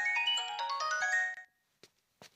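Mobile phone ringtone: a quick, bell-like melody of clear notes that stops about one and a half seconds in, with a faint click after it. The call is going unanswered.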